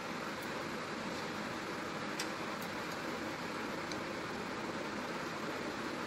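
Steady hiss of lit gas stove burners, with a few faint clicks.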